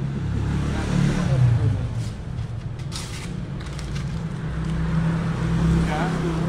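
A steady low mechanical hum, like an engine or machine running, with faint voices and a sharp click about three seconds in.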